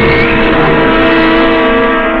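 Dramatic film background score: a loud chord of several steady tones held without a break, the low end thinning near the end.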